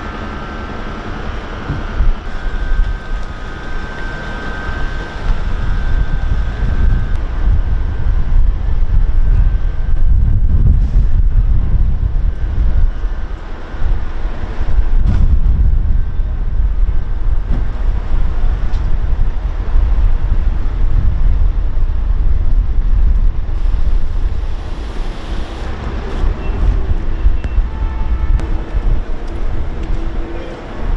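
Wind buffeting the microphone: a loud low rumble that swells and drops in gusts. A faint steady hum of a few high tones sits over it for the first several seconds.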